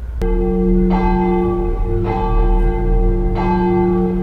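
Deep church-bell tolls, struck about four times, each ring hanging on under the next.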